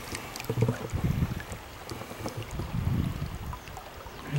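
Water splashing and sloshing as a hooked brown trout is drawn to the surface and grabbed by hand. Irregular low rumbles from handling or wind on the microphone come twice, about half a second in and again near three seconds.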